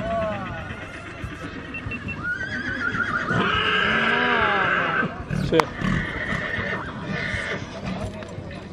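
A horse neighing: one long whinny that starts about two seconds in and lasts close to three seconds, loudest in its quavering middle.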